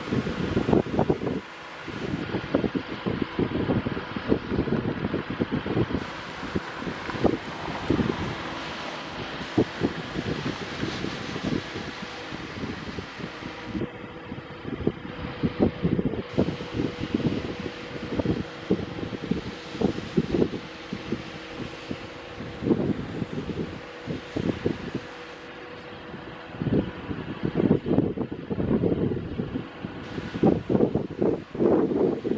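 Wind buffeting the microphone in irregular gusts over a faint, steady machine hum.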